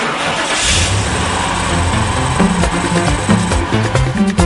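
Title-sequence music with a car engine sound effect laid over it, the engine starting and revving, with a rush of noise about half a second in. A rhythmic beat comes in near the end.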